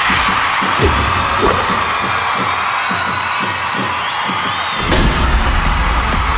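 Pop dance track in a breakdown, with the bass dropped out and cheering and shouts over it. The full beat with bass comes back in about five seconds in.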